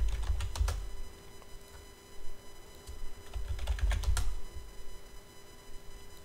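Computer keyboard typing in two short bursts of keystrokes: one at the start and one about three and a half seconds in.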